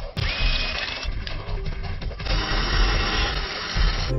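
Power drill boring into a wall, with a brief whine as the bit bites. About halfway through, a denser, steady hiss takes over.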